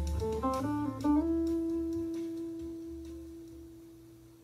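Electric guitar played through an amplifier: a few quick melody notes, then a final note about a second in that is left to ring and slowly die away as the tune ends. A low bass part sounds underneath and stops about two seconds in.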